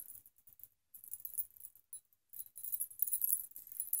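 Chunky gold-tone metal charm bracelet being handled, its chain links and charms clinking together in faint, scattered jingles.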